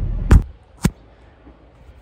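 Camera handling noise: a hand reaching over the lens makes a sharp knock against the microphone over the low rumble of a car cabin, which then cuts out to quiet, with one more short click shortly after.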